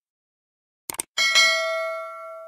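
Two quick clicks, then a bright bell chime, struck twice close together, rings out and fades slowly: the stock sound effects of an animated subscribe-button click and notification bell.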